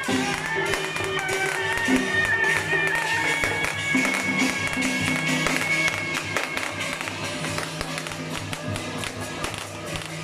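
Traditional Taiwanese temple-procession music: gongs and drums struck in a steady, even beat, with a high, wavering melody line over them.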